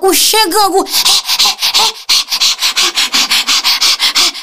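A fast, even run of short scratchy strokes, about five a second, after a brief spoken word.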